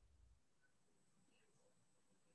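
Near silence: faint room tone, a pause between spoken sentences.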